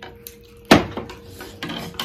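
A metal utensil clinks sharply against a soup bowl once, about two-thirds of a second in, with a few fainter clicks of cutlery on the bowls around it.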